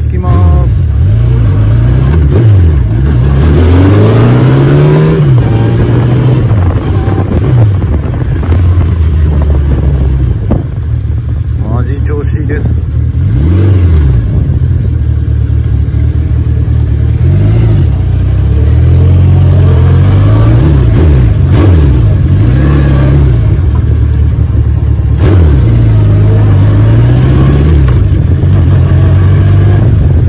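Honda CB750K4's air-cooled inline-four engine under way on a short ride, its revs climbing and falling again and again as the rider accelerates and backs off.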